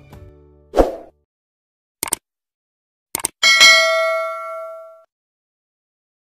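Subscribe-button sound effects: a short thump, two pairs of clicks, then a bell ding that rings out for about a second and a half.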